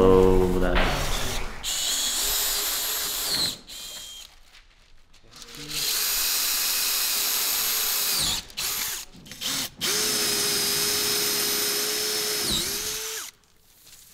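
Cordless drill boring through MDF down to the plywood beneath. It runs in three bursts of a few seconds each, with two short blips between the last two, and its whine drops off as each run stops.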